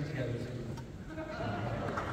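Mixed men's and women's voices singing a cappella in barbershop style, softly holding chords, with a new higher note entering about one and a half seconds in.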